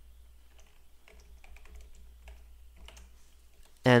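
Typing on a computer keyboard: an uneven run of faint key clicks as a short phrase is typed, over a steady low hum.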